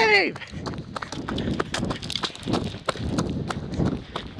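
Running footsteps crunching through dry fallen leaves: quick, irregular footfalls with the camera jostling as its holder runs.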